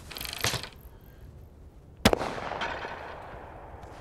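Over-under shotgun firing one shot at a clay target about two seconds in, a sharp crack whose echo fades over about a second. A shorter, quieter burst of noise comes in the first half-second.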